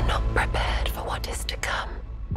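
Breathy whispering in several short hissed bursts, over a low music drone that fades out.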